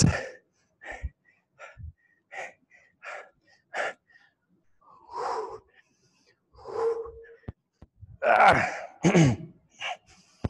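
A man panting hard from intense exercise: short sharp breaths about one every 0.7 s, then longer heavy exhalations and a voiced sigh near the end, the sound of being out of breath mid-set.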